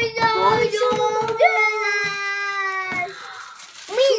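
A young girl's voice holding one long, high, drawn-out note like a sung exclamation, ending about three seconds in, with a few light crinkles of plastic packaging being handled.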